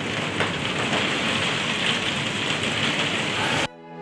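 Steady rain on a conservatory's glass windows and roof, an even hiss that cuts off suddenly near the end.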